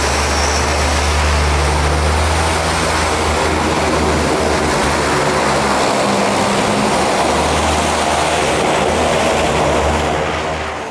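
The two PT6A turboprop engines and propellers of a DHC-6 Twin Otter floatplane running steadily as it pulls away from the dock, a deep drone under a hissing rush.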